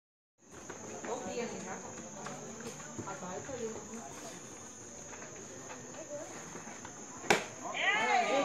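A softball pitch popping into the catcher's leather mitt once, a single sharp smack near the end. Under it, a steady high insect trill and faint crowd chatter.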